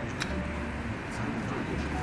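Indistinct background chatter over a low steady hum, with a faint click a fraction of a second in.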